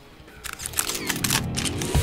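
Camera-shutter click sound effects, a rapid run of clicks starting about half a second in, over a tone that dips and rises again, opening a TV show's logo bumper.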